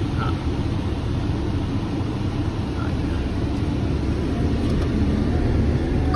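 Steady low rumble of a car on the move, heard from inside the cabin: engine and road noise.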